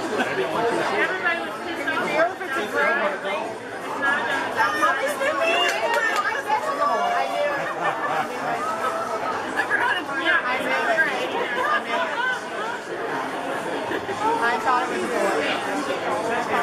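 Overlapping chatter from several people talking at once, with no single clear voice.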